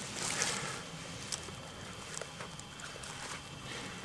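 Rustling and scuffing in dry leaf litter and pine needles on the forest floor, with scattered light clicks, as someone moves and kneels beside a body lying on a boulder.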